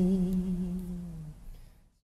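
A monk's voice holding the last note of a Khmer smot chant: one long, steady hummed tone that dips slightly and fades out about a second and a half in.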